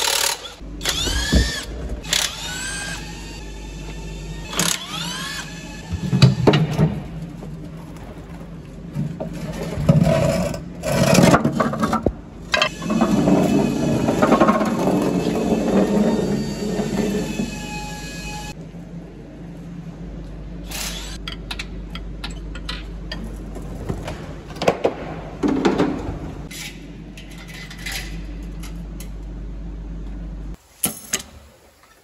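A cordless power wrench whirring in several short runs, each rising in pitch, as it undoes oil sump bolts. It is followed by scattered metallic knocks and clatter, under background music.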